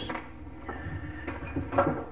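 Light handling noise of a Johnson/Evinrude outboard carburetor being taken apart by hand: small clicks and knocks of metal parts and a plastic parts container over a steady low hum, with a brief bit of voice near the end.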